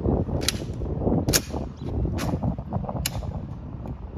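Four sharp clicks from the Tomb sentinels' ceremonial drill, evenly spaced a little under a second apart.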